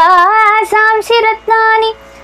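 A woman singing a Sanskrit verse solo in Carnatic style. Her voice glides and bends between held notes in a few short phrases with brief breaks, and it stops near the end.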